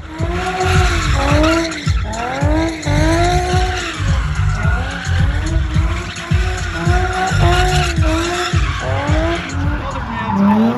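Nissan 350Z V6 engine revving up and down over and over, about once a second, while drifting, over a continuous hiss of skidding, squealing tyres.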